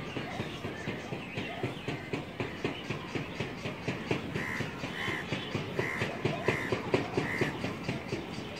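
A bird calling five times in short, evenly pitched calls from about halfway through, over a steady run of quick irregular taps or clicks.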